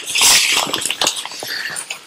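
Rustling and scraping of a camera backpack's nylon fabric and padded dividers as it is handled and opened up. It is loudest in the first half second and fades away.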